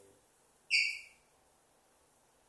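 A single short high-pitched tone, a little under a second in, that dies away within about half a second.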